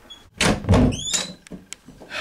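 A door being handled: a heavy thump as it moves, a few short rising squeaks, then two sharp clicks.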